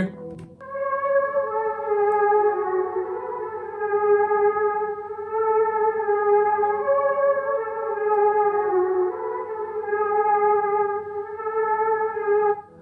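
Wordless ambient vocal sample played back on its own, with long held notes that shift slowly between a few pitches. It starts about half a second in.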